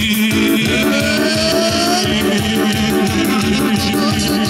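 Loud dance music over a PA loudspeaker, with a fast steady beat, a held low note and a melody that slides up and down in pitch.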